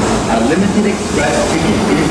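Kintetsu Urban Liner limited express train moving along an underground station platform, a steady rumble of running gear, with people's voices heard over it.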